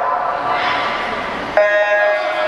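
Swim-meet starting signal: a sudden, steady electronic beep sounds about a second and a half in and holds for about a second, sending the swimmers off the blocks, over echoing pool-deck crowd noise.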